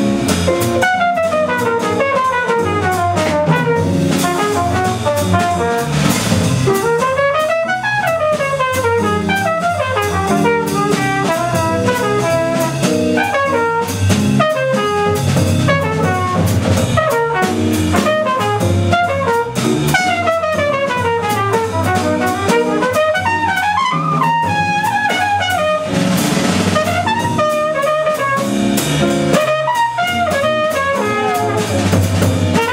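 Live jazz quartet: a trumpet plays a solo of quick runs that climb and fall, over archtop guitar, double bass and drum kit with cymbals.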